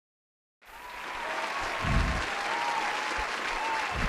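Audience applauding. The clapping fades in after a brief silence a little under a second in.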